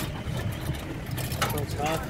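A motor vehicle's engine running steadily, with people's voices over it.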